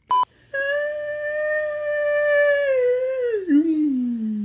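A short beep, then a long drawn-out vocal sound held on one pitch for about two seconds before sliding steadily down.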